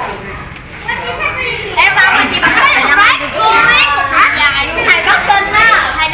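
Children talking and chattering, quieter for the first second or so and louder from about two seconds in.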